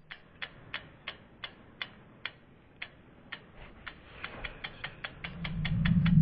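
Sound effect for an animated logo: a run of sharp ticks that slow at first, then speed up, with a low swelling rumble building in near the end.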